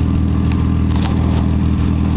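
A car engine idling steadily close by, a constant low hum at an unchanging pitch, with a couple of light clicks.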